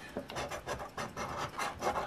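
A large coin scraping the latex coating off a scratch-off lottery ticket, in quick repeated strokes of about five a second.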